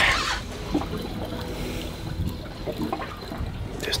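Seawater lapping and sloshing against the hull of a small boat, a steady low wash with a short louder rush at the start.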